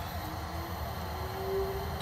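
Steady low hum of running rooftop HVAC equipment.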